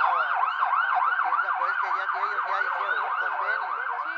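Ambulance's electronic siren sounding in a fast yelp: a rapid sweeping tone, repeated about four times a second.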